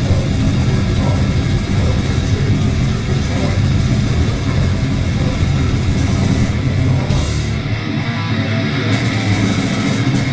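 A grindcore band playing live at full volume: a dense wall of distorted bass and guitar with drums. The deepest bass drops away briefly near the end.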